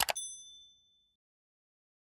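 A mouse click, then a bright bell ding whose high tones ring out and fade within about a second. This is the notification-bell sound effect of a subscribe-button animation.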